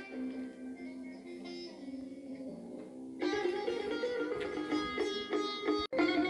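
Music playing on an old Yu-Ma-Tu portable radio-cassette player, sustained notes, softer at first and then fuller and louder about three seconds in.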